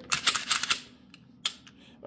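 A micro-compact .45 ACP pistol's magazine release pressed and the magazine ejected: a quick cluster of sharp metal-and-polymer clicks, then one more click about a second and a half in.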